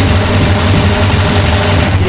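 Loud DJ mix on a club sound system: a steady, droning low bass under a dense wash of sound, with no clear beat, between rock tracks.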